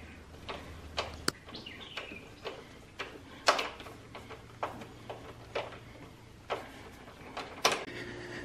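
Sparse, light clicks and taps of a plastic side cover being handled and fitted back onto a lawn tractor's engine bay, about one a second, with one sharper click just over a second in.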